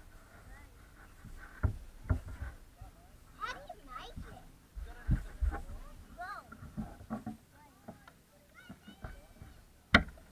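Faint, unclear voices, with several knocks and thumps as the bait boat carrying the camera is handled and set down on a concrete wall. A sharp, louder knock comes at the very end.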